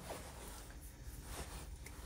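Faint rustling and a few light clicks as hands handle and bend an insulated electrical wire.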